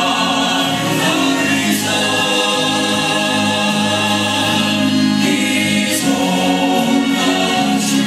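Recorded gospel song with several voices singing long held chords together.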